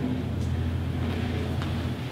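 Steady low hum of room tone.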